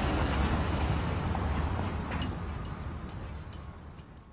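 Street traffic noise, a steady low rumble with hiss that fades out gradually.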